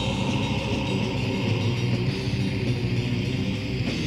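Black/death metal with heavily distorted electric guitar, played without a break on a lo-fi cassette demo recording. Near the end the sound shifts to a new pattern as the intro runs into the next song.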